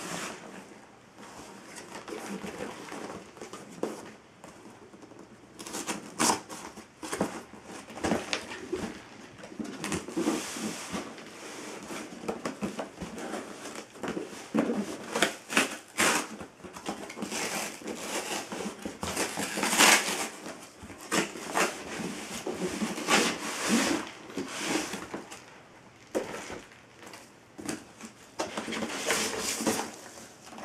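Cardboard shipping box being handled and opened by hand: an irregular run of scrapes, rustles and knocks of cardboard, loudest a little after two-thirds of the way through.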